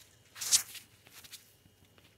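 A short hissing rustle of clothing brushing the camera as it is handled, about half a second in; otherwise quiet.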